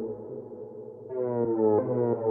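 Dark techno track: a repeating synthesizer riff of short, slightly falling notes drops away for about a second, leaving a low steady drone, then comes back at about three notes a second.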